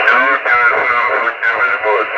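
A voice received over single-sideband radio through the RS-44 satellite transponder and played from the receiver: thin, narrow-band speech over a steady hiss.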